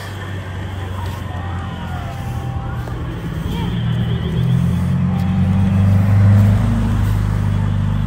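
A car driving past on the street, its engine and tyre rumble building gradually to its loudest about six seconds in, then easing a little.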